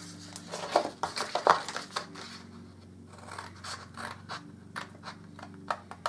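Scissors snipping through card in a run of short, irregular cuts, busiest in the first couple of seconds.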